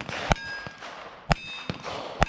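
Revolver shots at steel plate targets: one at the very start, another a moment later and a third about a second in. Each is followed by the ringing clang of a hit steel plate.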